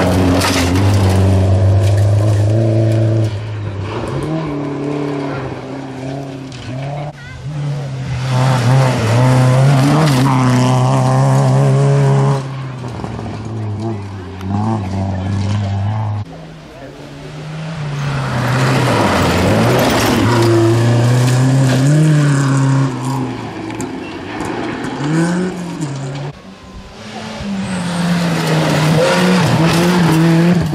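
Rally cars passing one after another at speed on a gravel stage: first a Volvo 940 sliding through the bend, later a Ford Fiesta. Their engines rev hard, the pitch climbing and dropping at each gear change or lift, and the sound dips briefly between cars about halfway and again near the end.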